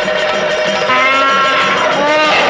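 An elephant trumpeting: a long call held for about a second, then falling in pitch near the end, over background film music.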